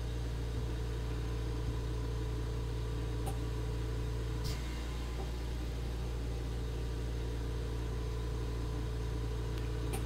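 Steady low hum of background room noise, with two faint ticks around the middle.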